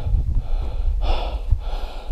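A hiker breathing heavily close to the microphone, two long breaths in a row, from the exertion of a long, steep mountain climb. A low rumble of wind on the microphone runs underneath.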